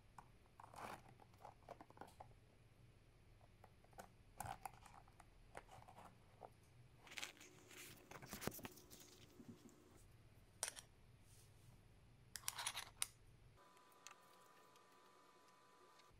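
Faint, scattered rustling and crinkling of a thin plastic placemat sheet being handled and pressed down by hand, in short irregular bursts. The sheet falls quiet for the last two seconds or so.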